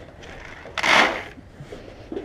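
One short scraping rush, about half a second long, a little under a second in, over low handling rumble.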